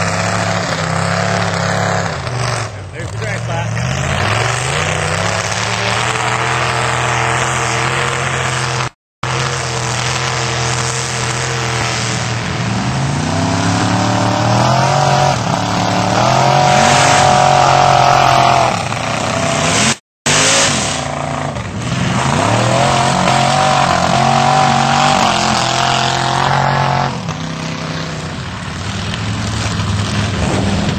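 Lifted pickup trucks' engines revving hard under load as they churn through a mud bog, the pitch climbing and falling with the throttle. The engine runs loudest and highest a little past the middle. The sound cuts out briefly twice, about nine and twenty seconds in.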